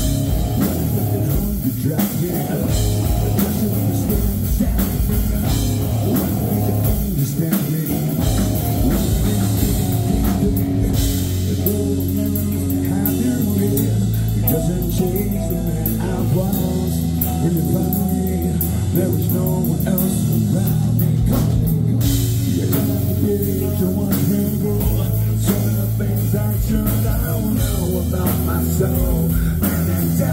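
Rock band playing live: electric guitar, bass guitar and drum kit, with a male singer.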